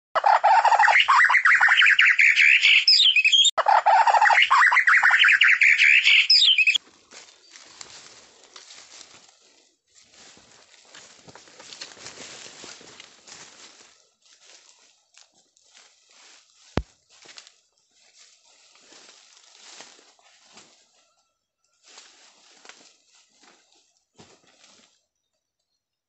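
Loud flapping of a bird's wings for about seven seconds, with a short break about halfway, then faint intermittent rustling and a single sharp click.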